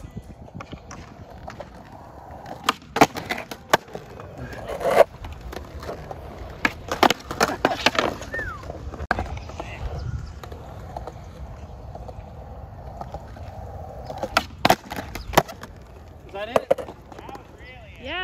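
Skateboard wheels rolling on concrete, broken by clusters of sharp clacks as the board hits the ground and ramp, a few seconds apart. Brief voices near the end.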